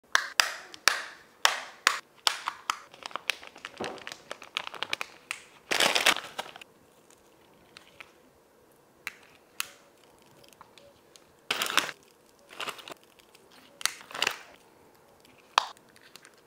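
Clear plastic pill organizer's snap lids clicking open one after another in a quick run of sharp clicks, then a few separate bursts of crinkling and rustling as the candy packets and strips are handled.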